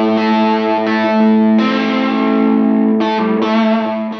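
Electric guitar played through a UAFX amp-simulator pedal, chords struck and left to ring. A new chord comes in about one and a half seconds in and another near three seconds.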